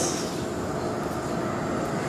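Steady background room noise with no distinct event: an even hiss and low rumble picked up through the pulpit microphones.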